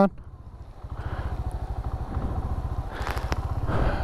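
Small single-cylinder motorcycle engine idling with a steady low putter, getting slightly louder near the end.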